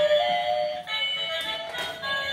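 Battery-operated toy bullet train playing its simple electronic melody, a tune of steady beeping tones that step from note to note.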